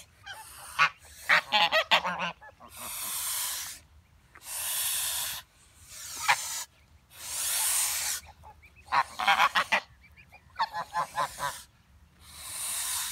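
Domestic geese honking in quick clusters of short calls, alternating with three long hisses of about a second each. The low-stretched necks and half-spread wings make this a goose threat display.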